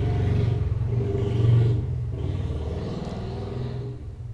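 Low rumble of a passing motor vehicle engine, loudest about a second and a half in and then fading away.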